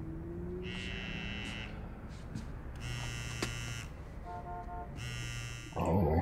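An electric buzz sounding in pulses of about a second each, repeating several times with short gaps between them.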